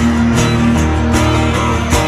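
Two acoustic guitars strumming a steady country rhythm through a PA, with strums a little over twice a second over a sustained bass line.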